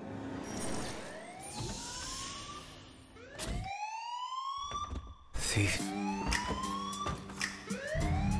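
A security alarm siren wailing in rising sweeps, about one every two seconds, set off by the laser beams. In the second half, sharp hits and a low pulsing beat join it.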